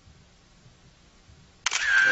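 Near silence, then a camera shutter firing once, a sudden click near the end followed by a short high tone.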